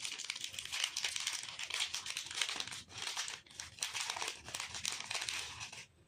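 Foil-lined plastic snack wrapper crinkling and tearing as hands open it and pull out wafer rolls: a dense run of crackles with a few brief pauses.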